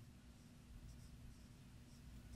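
Faint strokes of a dry-erase marker writing on a whiteboard, over a low steady hum.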